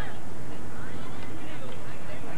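Distant voices calling and talking across an outdoor soccer field, over a steady low rumble of background noise.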